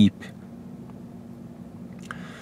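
A man's word ends at the start, followed by a steady low hum of in-car room tone.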